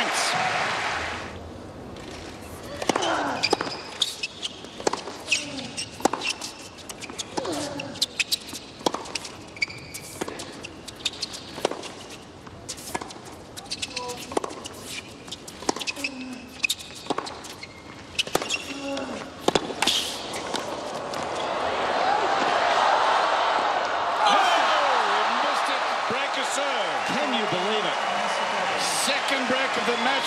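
Tennis rally on a hard court: the ball struck by rackets and bouncing about once a second, with sneaker squeaks between shots. After about twenty seconds the point ends and the crowd applauds and cheers until the end.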